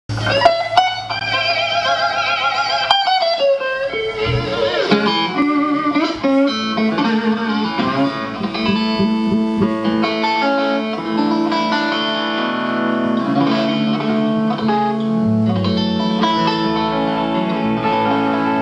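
Electric guitar played live through an amplifier: held notes with a wide, wavering vibrato for the first three seconds, then a slower line of single notes that ring on over one another, with a low note sounding underneath.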